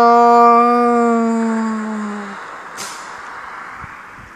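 A child's voice holding one long note for about two and a half seconds, falling slightly and fading away: a vocal take-off sound effect for toy figures flying up. A brief rustle follows.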